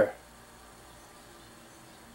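A man's voice ends at the very start, then quiet room tone with a faint steady hum.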